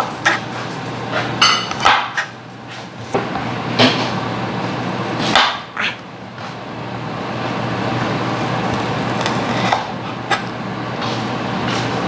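A kitchen knife coming down on a plastic cutting board while slicing green vegetables: a few separate knocks, irregular and seconds apart, over a steady low hum.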